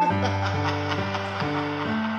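Instrumental intro of a hip-hop track: held chords that change about every half second over a deep bass line that comes in at the start, with quick light ticks on top for the first second and a half.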